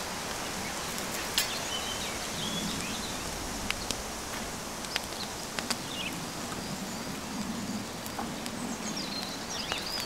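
Woodland ambience: a steady rushing hiss with scattered sharp clicks, the strongest about a second in. A few short chirping bird calls come through near the start and again near the end.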